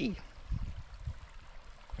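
Shallow stream running over rocks: a steady trickling rush of water, with irregular low rumbles of wind on the microphone.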